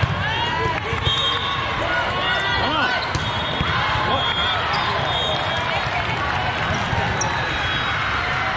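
Volleyball court sounds: many voices shouting and calling out during and just after a rally, sneakers squeaking on the court floor, and a few sharp thumps of the ball or of feet landing.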